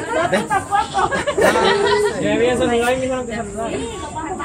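A group of young people talking over one another: indistinct chatter of several voices.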